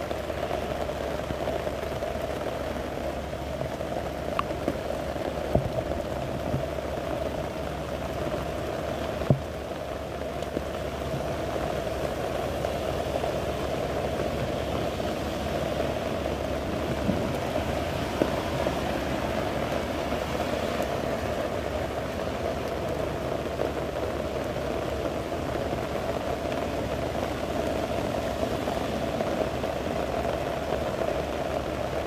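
Steady heavy rain falling, an even hiss with a few sharper drop taps early on.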